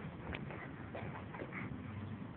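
Miniature schnauzer playing with a ball: several short, scattered scuffs and taps over a steady background hiss.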